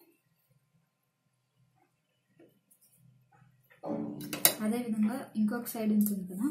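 Near silence at first, then a woman's voice starts about four seconds in, mixed with sharp metallic clicks from the sewing machine as the fabric is set under its presser foot.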